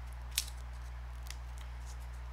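Steady low hum with a few short, sharp clicks, the loudest about half a second in.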